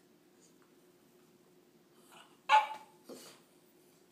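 A small dog gives one sharp bark about two and a half seconds in, followed half a second later by a softer second bark. It is a demanding bark from a dog that wants another dog's bone.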